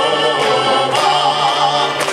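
Male vocal trio singing a long held chord, the voices wavering with vibrato.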